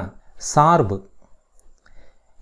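A narrator's voice speaking one short word in Tamil, then a pause.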